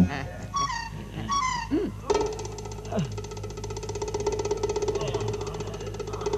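Film soundtrack music: plucked-string notes and short sliding pitch drops, and from about two seconds in a steady held tone over a fast, even pulse. A man laughs in the first two seconds.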